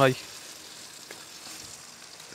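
Chicken pieces frying in hot oil in a karahi, a steady soft sizzle.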